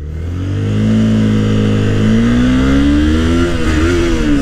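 Honda CBR250R's single-cylinder engine pulling away from a standstill in first gear, its pitch rising steadily for about three and a half seconds and then dipping briefly near the end before climbing again. Wind noise grows behind it as the bike gathers speed.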